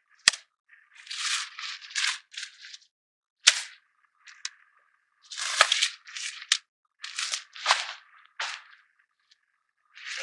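Handling noise from a folded pop-up changing tent in its nylon carry bag: short rustling, scraping bursts of fabric, with two sharp clicks, one near the start and one about three and a half seconds in.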